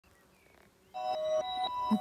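Near silence, then about a second in, intro music begins: a simple melody of clear, steady notes changing every quarter to half second.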